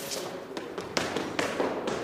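Hurried footsteps of hard-soled shoes going down stone stairs: a quick run of sharp taps, about three a second.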